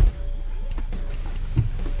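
Music with drums and guitar playing from the car's FM radio. A sharp knock right at the start is the loudest moment.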